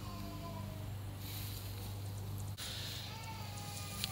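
A baby crying faintly in the distance: a thin, drawn-out wail at the start and another near the end, over a steady low hum.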